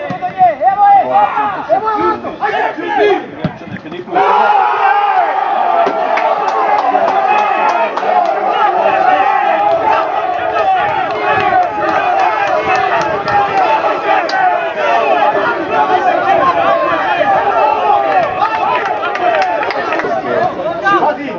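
Footballers and team staff shouting over one another in a heated on-pitch confrontation. A few voices at first, then from about four seconds in a loud, steady din of many men's voices at once.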